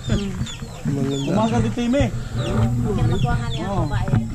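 Chickens clucking repeatedly in short arching calls, mixed with people's voices.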